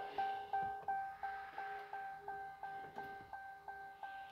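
Pickup truck's instrument-cluster warning chime beeping steadily, about three short beeps a second, with the engine off and the ignition switched on.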